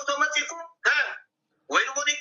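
Speech only: a person talking in short phrases, with a brief pause just past the middle.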